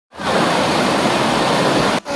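Mountain stream water rushing and splashing over rocks in a small cascade: a loud, steady rush that starts just after the beginning.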